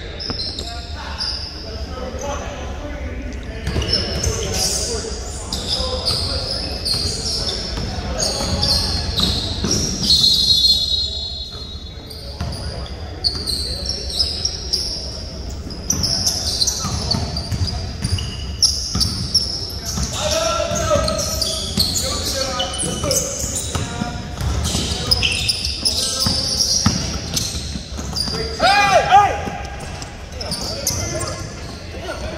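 Basketball game on a hardwood gym court: the ball bouncing, many short high sneaker squeaks, and players' voices calling out, echoing in the large hall.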